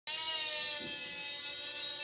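Blade Nano QX micro quadcopter in flight: its four small motors and propellers make a steady, high-pitched whine of several held tones.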